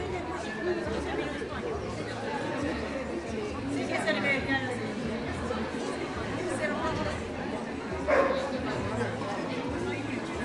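People chattering in a hall, with a dog barking; the loudest bark is a single short one about eight seconds in.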